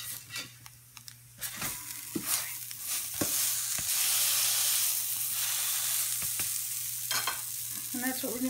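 Breaded pork schnitzel sizzling in hot oil in a nonstick skillet just after being flipped, the sizzle swelling a couple of seconds in as the other side hits the fat. A metal slotted spatula clicks and scrapes against the pan a few times.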